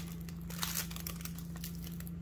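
Clear plastic bag holding a pack of paper doilies crinkling faintly as it is picked up and handled, in scattered light rustles.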